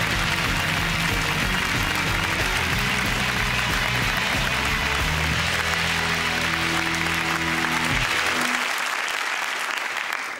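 Studio audience applauding over the show's closing theme music. The music stops about eight seconds in, while the applause carries on.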